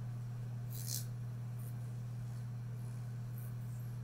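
Close-miked comb and scissors handling, with one brief hissy scrape about a second in and a few faint light flicks after it. A steady low electrical hum runs underneath.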